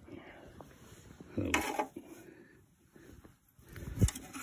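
Faint rustling and light scraping of a fork stirring through a heap of vacuumed-up lint in a metal garbage can.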